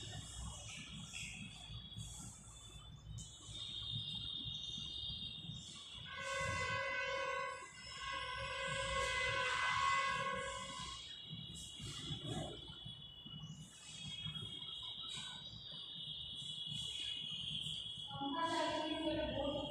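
Faint chalk strokes on a blackboard under a steady high-pitched tone. In the middle, a louder horn-like tone at one steady pitch sounds three times in short blasts, the loudest thing heard.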